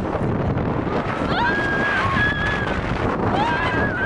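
People screaming on a moving roller coaster: two long, high, held screams, the first starting about a second in and the second near the end. Under them is a steady rush of wind on the microphone and the ride's rumble.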